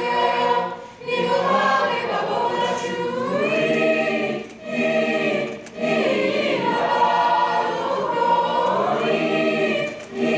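Mixed choir of young male and female voices singing in harmony, the phrases broken by short breaths about a second in and twice around five seconds in.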